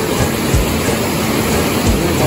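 Steady rush of a fast-flowing river.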